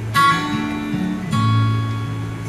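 Acoustic guitar strummed in a slow folk song: two chords about a second apart, each left to ring out.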